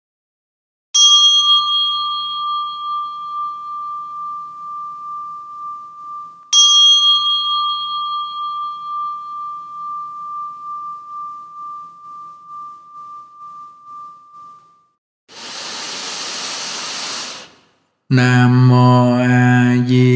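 A small ritual bell struck twice, about five and a half seconds apart, each strike ringing on in a long, steady tone that slowly fades. A short hiss follows, then a voice starts chanting near the end.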